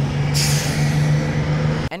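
Bus sound effect: an engine running with a steady low drone, and a loud hiss of air brakes from about a third of a second in; both cut off abruptly just before the end.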